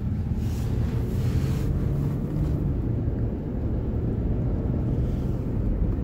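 Steady low road and engine rumble of a van being driven, heard from inside the cabin, with a short hiss of wind noise from about half a second to nearly two seconds in.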